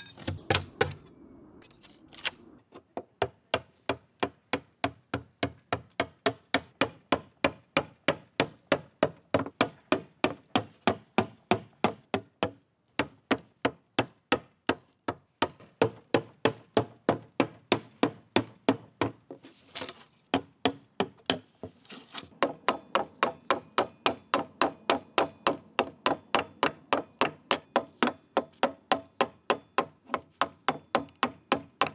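A chisel being tapped in under old, loose wood veneer to chip it off, giving sharp, evenly paced knocks and cracks of about three a second, with a brief pause about two thirds of the way through.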